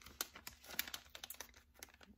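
Irregular light clicks and crinkles from hands handling and opening a small package.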